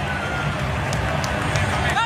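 Football stadium crowd noise: a steady, dense din of many voices from the stands, with a few sharp claps near the end.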